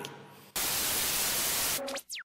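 A burst of white-noise static, like an untuned TV, starts abruptly about half a second in and cuts off just as sharply a little over a second later. It works as an edited-in transition effect between two clips, and a brief low tone follows it near the end.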